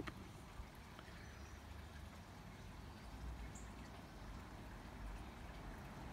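Quiet outdoor background: a faint low rumble that grows slightly from about halfway through, with a couple of very soft clicks.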